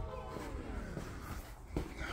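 Soft footsteps and camera handling noise on a garage floor, with a soft thump near the end. The last of a background music track fades out within the first second.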